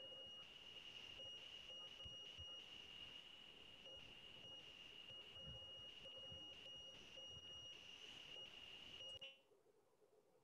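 A faint, steady, high-pitched electronic tone with a fainter lower hum, carried over the video-call audio. It cuts off suddenly about nine seconds in.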